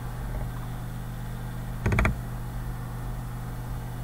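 A quick run of three or four computer mouse clicks about halfway through, over a steady low hum.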